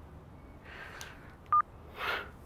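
A mobile phone gives one short, sharp electronic beep about three quarters of the way in, over quiet room tone.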